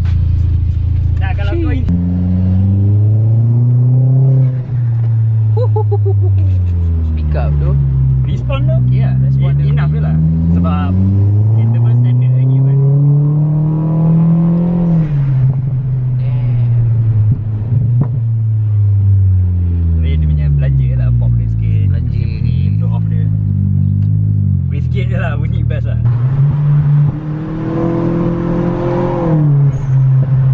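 Mitsubishi Lancer's engine heard from inside the cabin under acceleration, its note climbing steadily and dropping sharply at each upshift, then sliding down as the car eases off; this happens several times.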